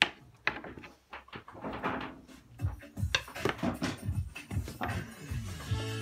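Sharp clicks and knocks of glass pieces and tools being handled on a wooden workbench, the loudest a click right at the start. Background music fades in about three seconds in and is steady by the end.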